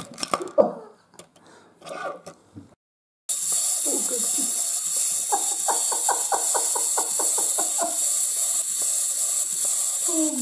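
Walking-granny novelty toy with a walking frame running along a wooden table, its mechanism clicking in a fast even rhythm, about six clicks a second, for some three seconds in the second half, over a steady hiss. A few scattered clicks and short voice sounds come before it.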